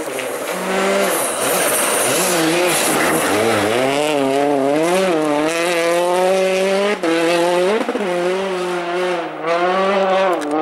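Rally car engine at high revs as the car approaches and slides past on a snow stage. The pitch climbs early on, then wavers up and down with the throttle, with brief lifts about seven seconds in and again near the end.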